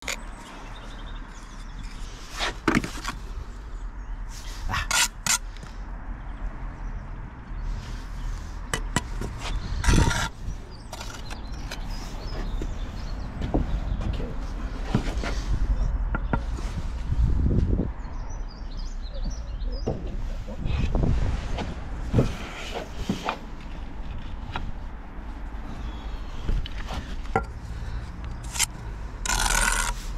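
Steel brick trowel working mortar and bricks: scrapes of the blade and scattered sharp taps and knocks as a brick is set, over a steady low rumble.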